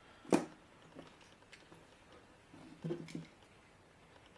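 Small plastic clicks and taps as a toy mini quadcopter is handled and its battery plugged in. One sharp click comes shortly after the start, then fainter ticks follow about a second in and again near three seconds.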